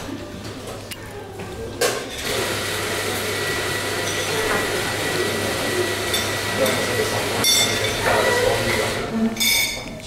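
Knife and fork clinking against a china plate a few times, over a steady hum of background voices and room noise.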